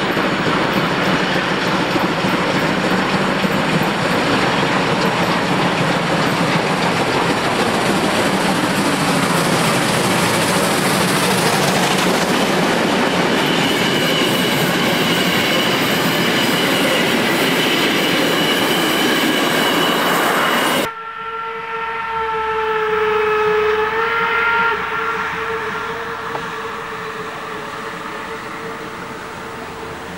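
Deutsche Reichsbahn class 50 two-cylinder 2-10-0 steam locomotive working hard close by with a passenger train: loud, dense exhaust noise, with a thin high squeal joining in as the coaches pass. About two-thirds through the sound cuts off abruptly to a quieter scene where a steam locomotive whistle blows a steady chord for a few seconds, its lowest note fading out more slowly.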